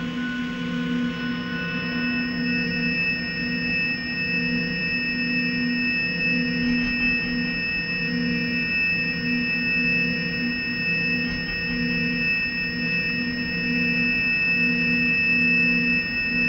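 Beatless passage of a 1990s electronic trance track: a synthesizer drone of steady, pure held tones, low and high together. The low tone pulses gently about once a second.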